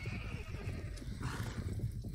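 A group of ridden horses walking on a dirt track: many overlapping hoofbeats, with a short horse whinny.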